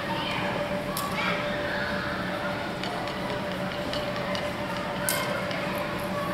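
Longsword blades clashing in a fencing exchange: one sharp clack about a second in and another, with a short ring, near the end, with a few lighter ticks between. Chatter from onlookers runs underneath in a large hall.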